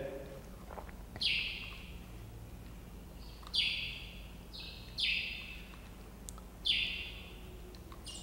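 A bird calling in five short, high chirps, each starting sharply and fading within about half a second, over a quiet room.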